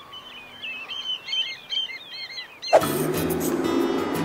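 Birds chirping in many quick, short, high calls over a quiet background; a little under three seconds in, loud music starts suddenly and carries on.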